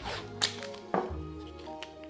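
Background music, with a few short rips and taps as masking tape is pulled off its roll, torn and pressed down.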